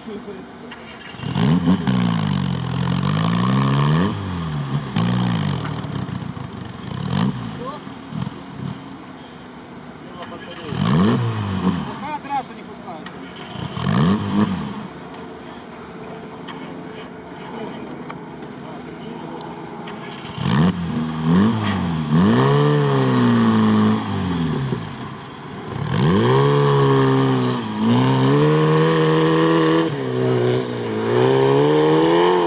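Lifted off-road ZAZ Zaporozhets revving hard in sand: the engine rises and falls in repeated bursts, eases off mid-way, then holds long stretches of high revs in the last third.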